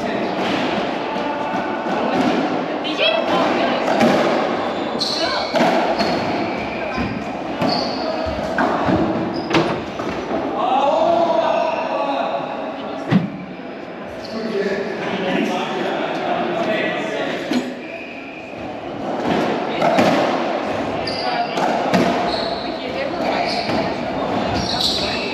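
Indistinct talking among players, echoing in an enclosed racquetball court. A few sharp knocks of a racquetball bouncing or being hit cut through it, the clearest about ten and thirteen seconds in.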